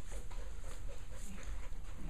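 A dog panting, short soft breaths about twice a second, over a steady low rumble.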